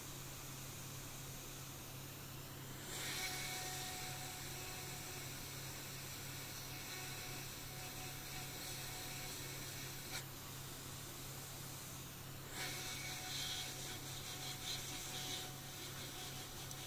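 Hot-air rework station blowing a steady hiss of hot air over the graphics card, starting about three seconds in, to reflow the solder under a replacement MOSFET. A low steady hum sits underneath.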